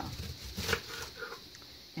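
Kitchen knife cutting through a raw cabbage wedge on a countertop: a few short crisp crunches and taps, the clearest about half a second in, then quieter handling.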